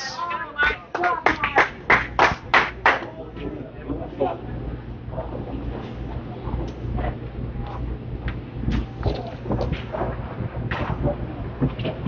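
Candlepin bowling alley: a quick run of sharp clattering knocks in the first three seconds, then a steady low rumble with scattered knocks and faint voices.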